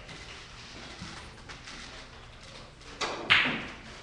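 Quiet room tone, then two sharp knocks about three seconds in, the second louder and trailing off briefly.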